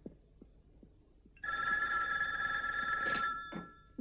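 Telephone bell ringing once for about two seconds, beginning about a second and a half in.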